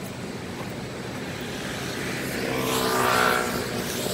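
A road vehicle passing by over a steady background hiss, its sound swelling to its loudest about three seconds in and then fading.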